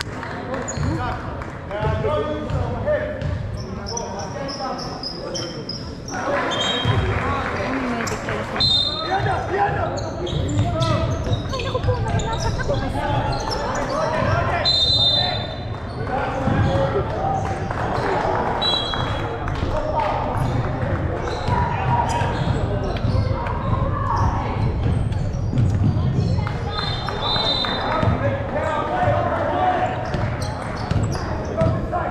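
Basketballs bouncing on a wooden gym floor amid indistinct players' shouts and chatter, echoing in a large sports hall, with short high squeaks now and then.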